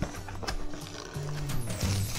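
Background music with sustained low notes, over the handling of a cardboard box being opened: a couple of sharp knocks in the first half second and a papery rustle near the end.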